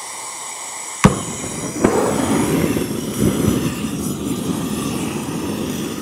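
GrillBlazer propane torch gun being fired up to light charcoal: a steady gas hiss, a sharp ignition pop about a second in, then the flame burning with a loud, steady rushing noise that grows louder about two seconds in.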